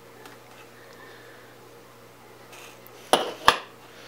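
Two sharp metallic clinks about half a second apart, a little past three seconds in, as the soldering iron and small screwdriver are set down.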